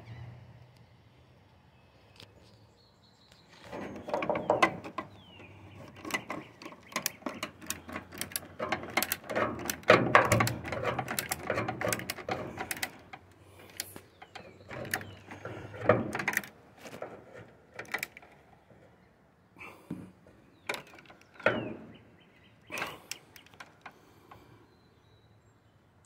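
A small socket ratchet clicking in quick runs as a 10 mm bolt on a brake master cylinder bracket is tightened, then a few single clicks and knocks near the end.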